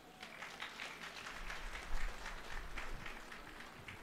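Audience applauding, the clapping building over the first two seconds and then tapering off.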